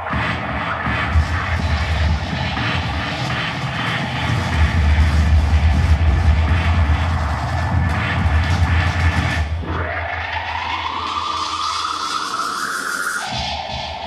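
Live electronic music played from a laptop and controller: a dense, bass-heavy texture. About ten seconds in, the bass drops out and a tone sweeps upward for about three seconds, then breaks off into a steady tone as the low end comes back.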